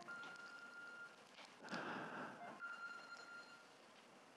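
Very faint room tone in a lecture hall during a pause in the talk, with a faint steady high tone that sounds twice, briefly.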